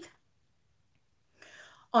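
A pause in a woman's speech: her word trails off at the start, followed by over a second of near silence, then a soft breath-like hiss, and she starts speaking again at the very end.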